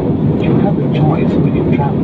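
Jet airliner cabin noise in flight: a loud, steady low rumble of engines and rushing air, heard from inside the cabin.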